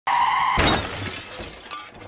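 Channel-intro sound effect: a short steady electronic tone, cut off about half a second in by a sudden crash that dies away over a second or so.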